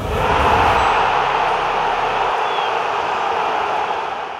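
Logo-sting sound effect: a loud, steady rushing noise with no clear tune. Its deep rumble drops away about a second in, and the rest slowly fades.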